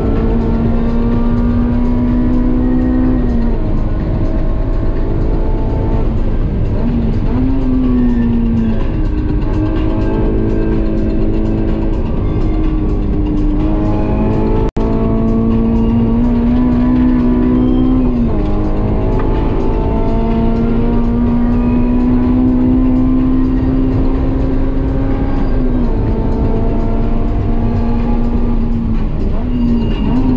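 Honda S2000's 2.2-litre inline-four engine heard from inside the cabin, held at high revs under full load on track: its pitch climbs slowly through each gear and drops sharply at the shifts, over steady tyre and road noise. The sound cuts out for an instant about halfway.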